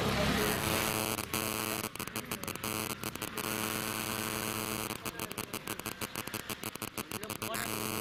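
Steady electrical buzz, a hum with many even overtones, cut through by many brief dropouts.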